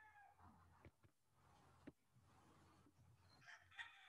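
Near silence, with a couple of faint clicks and a faint, high call near the end.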